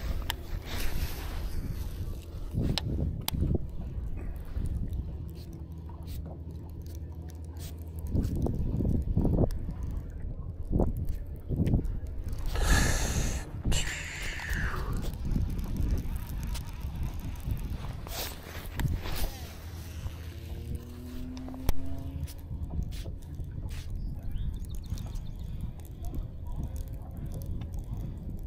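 A cast with a baitcasting reel about halfway through: a burst as the lure is thrown, then the spool whirring as line pays out, its pitch falling as the spool slows. Under it runs a steady low rumble, with light clicks of the reel and rod handling.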